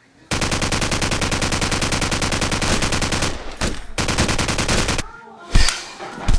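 Rapid automatic gunfire: a steady burst of about three seconds, then after a brief break two shorter bursts, cutting off sharply about five seconds in. A couple of heavy thumps follow near the end.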